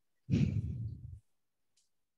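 A person sighing: one breath out close to the microphone, about a second long, dying away.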